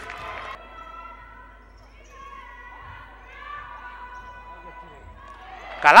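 Faint basketball court sounds: a basketball bouncing on the court floor, heard in a large hall.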